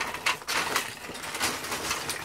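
Loose plastic Lego bricks clicking and clattering against each other in quick, irregular bursts as hands rummage through a bag full of them.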